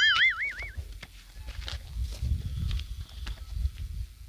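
A short, high, wobbling tone that warbles up and down about four times a second and stops under a second in, like a cartoon sound effect dubbed in for comic effect. After it, wind rumbles on the microphone, loudest around the middle, with a few faint clicks.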